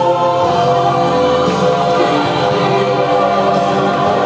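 Christian choral music playing, a choir singing long held notes.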